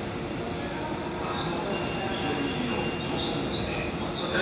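An E531 series electric train standing at the platform: a steady hum from its equipment with thin high whines setting in about a second in, amid station noise.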